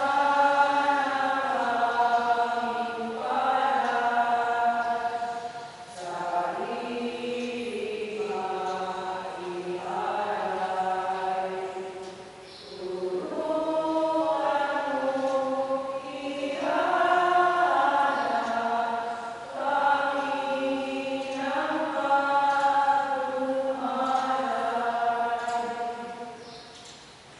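Choir singing a slow hymn in long held notes, in phrases that break off about every six seconds.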